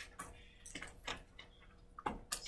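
About half a dozen light ticks and short scratches spread across two seconds, with a faint steady hum in a quiet room.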